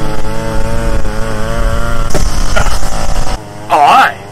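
Small petrol engine of landscaping power equipment running steadily, its pitch wavering slightly, loud throughout, then cutting off abruptly a little over three seconds in.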